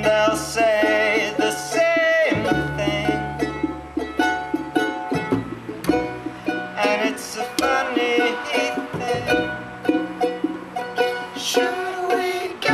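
Acoustic street band playing: a strummed charango over held double-bass notes, with junk percussion and a voice singing long, wavering lines.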